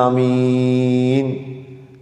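A man chanting Arabic recitation in a melodic style, holding one long steady note that fades away about a second and a half in.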